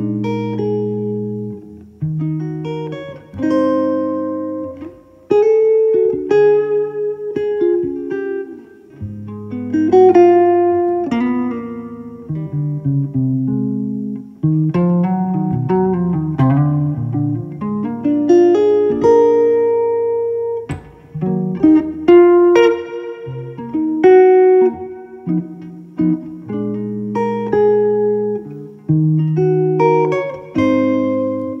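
White archtop hollow-body electric guitar played through an Acoustic Image Coda 1R amplifier: plucked chords with bass notes, each chord ringing and fading, with a melody moving on top.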